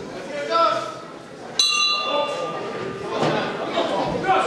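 Boxing ring bell struck once, about one and a half seconds in, ringing out and fading over about a second and a half: the signal to start the round.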